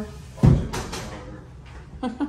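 Framed glass shower door knocking against its frame: one sharp knock about half a second in, with a lighter clack just after.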